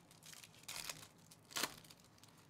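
Foil wrapper of a 2024 Topps Big League baseball card pack crinkling and tearing as it is pulled open by hand, in a few short bursts with the loudest about a second and a half in.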